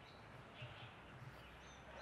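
Near silence: quiet outdoor ambience with faint, scattered chirps of small birds, one short high whistle near the end.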